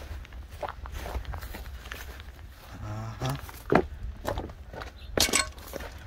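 Footsteps of a person walking across grass and onto gravel, irregular and uneven, with a couple of sharper knocks about four and five seconds in. A short grunt is heard about halfway through.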